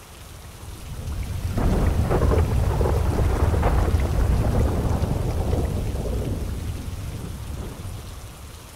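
A long roll of thunder over steady rain: it builds about a second in, is loudest through the middle, and dies away near the end.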